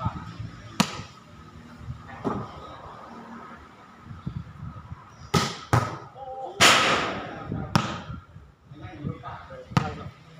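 A volleyball struck by players' hands and forearms during a rally: six sharp slaps spread over the ten seconds, two of them close together a little past the middle. A louder rush of noise lasting about a second comes soon after that pair, and men's voices call out on the court throughout.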